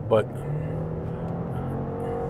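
A car engine running with a steady drone, its pitch edging up slightly near the end.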